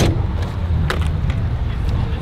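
Rear door latch of a 1936 Cadillac Model 75 limousine clicking as the door is opened by its handle, a sharp click about a second in. Under it a steady low rumble.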